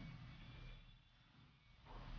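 Near silence: faint room tone with a low background hum.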